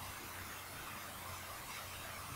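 Room tone: a steady faint hiss with a low hum underneath.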